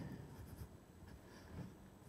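Faint rustling and handling of paper sheets at a lectern, with soft irregular bumps picked up by the microphone.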